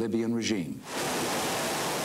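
F/A-18 Hornet's twin jet engines running at full power with afterburner on the carrier catapult, a steady rushing hiss of jet noise. It cuts in abruptly just under a second in, after a man's voice.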